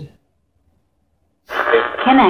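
Skullcandy Air Raid Bluetooth speaker playing a higher-pitched voice-like sound that starts about one and a half seconds in after a near-silent pause, thin, with no high end.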